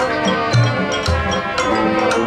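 High school marching band playing: sustained brass chords over sharp percussion strikes, with low bass notes entering about half a second and a second in.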